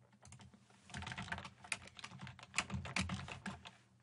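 Computer keyboard typing: a quick run of keystrokes that starts about a second in and continues almost to the end, as a name is typed in.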